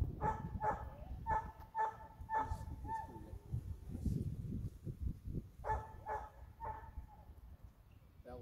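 A dog barking in short repeated barks: six in quick succession, then a pause, then three more, over a low rumble of wind on the microphone.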